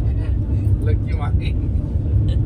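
Steady low rumble of a moving passenger train, heard from inside a sleeper coach, with faint voices over it.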